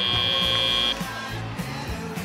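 Arena buzzer sounding a steady high tone for the end of the match, cutting off about a second in, over background music.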